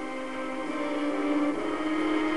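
Instrumental backing music with sustained, held chords that change twice: about two-thirds of a second in and again about a second and a half in.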